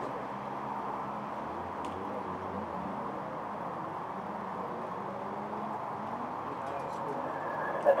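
Steady background din of distant voices over a low hum, with no distinct event standing out.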